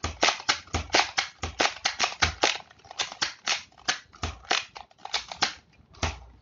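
Nerf AccuStrike Falconfire blaster being worked by hand: a fast, uneven run of sharp plastic clicks from its mechanism, about four or five a second, with a couple of brief pauses.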